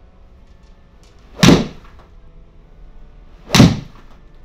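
Two golf iron shots hit into an indoor simulator screen, about two seconds apart: each a loud, sharp crack with a short ring after it.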